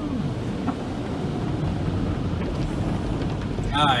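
Automatic car wash spraying water and foam over a vehicle, heard from inside the cabin as a steady rain-like rush over a low rumble.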